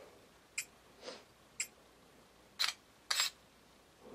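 A few light clicks from an iPhone being handled, then two short camera-shutter sounds about half a second apart as a long-exposure camera app takes its picture.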